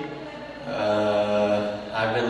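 A man singing one long held note at a steady pitch, coming in about half a second in.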